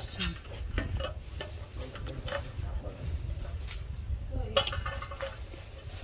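Scattered clinks and scrapes of a stainless steel pot lid against a pot, with one louder ringing clink about four and a half seconds in, over a low steady rumble.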